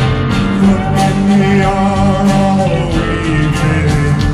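Live rock band playing an instrumental stretch between vocal lines, with electric guitar, keyboards and a steady drum beat.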